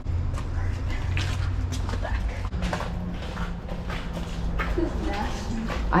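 Shoes scuffing and knocking on concrete as a person climbs into a storm-drain pipe, over a steady low rumble.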